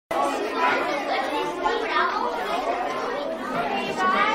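Many children's voices chattering at once, overlapping so that no single word stands out.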